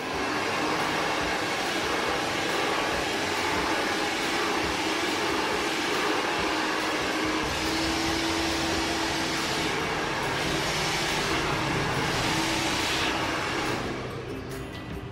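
Handheld hair dryer blowing steadily on long hair, a constant rush of air with a faint motor hum.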